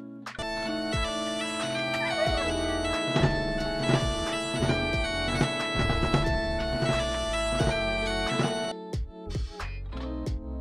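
Bagpipes playing: steady drones under a chanter melody. The sound starts just after the opening and cuts off suddenly about a second before the end, followed by a few short, separate notes.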